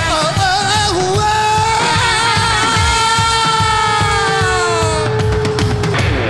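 Live rock band with a male singer holding one long, high wailing note that wavers at first and then sags slowly before fading about five seconds in, over drums and bass.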